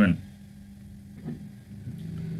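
A steady low hum of background noise, after a spoken word ends at the very start. A faint short sound comes about a second and a quarter in.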